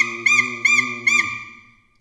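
A high whistle-like tone made with the mouth, hit with four sharp accents about a third of a second apart, each a quick pitch blip that eases back. Under it a low hummed note stops after about a second. The accents are made with the mouth, a breath exercise towards oboe vibrato.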